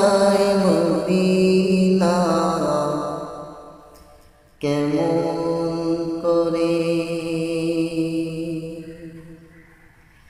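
A man singing a Bengali naat (Islamic devotional song) solo, drawing out long held notes. One phrase fades away, a new one starts abruptly about halfway through, and it fades out again near the end.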